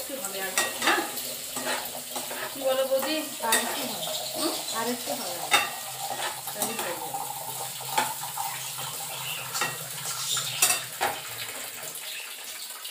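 A metal spatula stir-frying noodles in a pan, with irregular clicks and scrapes against the pan over a steady frying sizzle.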